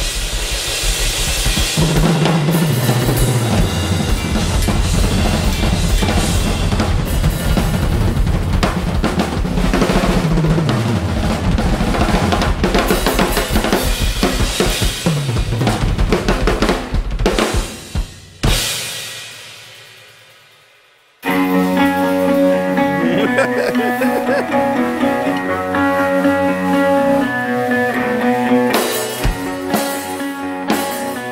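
Two drum kits played together hard in a drum-battle intro, busy fills and cymbals with several falling tom sweeps, ending about 18 seconds in with a final hit that rings out and fades. About 21 seconds in a band track with guitar and bass starts suddenly and both drummers play along with it.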